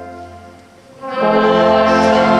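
Brass band playing a carol: a held chord dies away in the echo, then about a second in the next chord comes in loud and is held.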